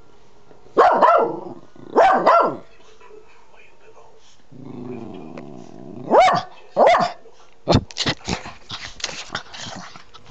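Small long-haired terrier barking in short bursts: one bark about a second in, a quick double bark soon after, and two more later, with a low growl in between. Near the end, rustling and clicking as fur brushes against the microphone.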